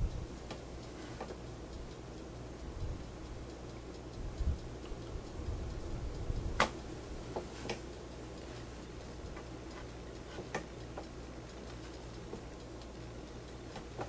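Quiet handling sounds of cotton cloth being pinned by hand on a wooden table: low knocks and rustles, with a few sharp clicks as straight pins are worked through the fabric, over a steady low hum.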